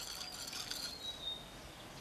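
Faint outdoor ambience: a steady high chirring of insects, with a thin, faint whistling bird call around the middle.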